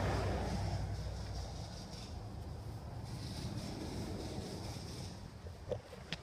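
Steady low outdoor rumble with a faint hiss that slowly fades, and a short click near the end.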